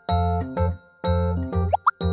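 Light, bouncy background music with a steady bass pattern of pitched notes. Near the end come two quick rising pop sound effects.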